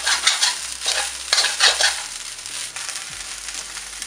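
Beetroot rice being stirred and tossed with a spatula in a wide frying pan, scraping strokes over a frying sizzle. The strokes are louder in the first two seconds, then softer.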